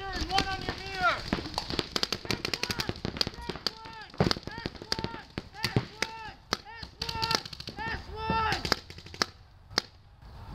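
Paintball markers firing strings of sharp pops across the field, with players shouting in short calls between the shots.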